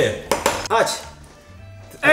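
A few quick clicks of plastic Jenga blocks knocking together, then it quiets to a few faint steady tones.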